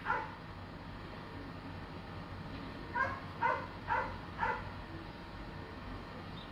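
A dog barking: one bark at the very start, then four quick barks about two a second, a few seconds in.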